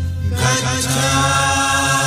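Buddhist devotional verse in Pali, chanted in long held notes over a steady low drone. The voice breaks off briefly at the start and then resumes.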